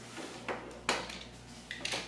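Tomica die-cast toy cars clacking against each other and the wooden tabletop as a small child handles them: several sharp clicks, the loudest about a second in.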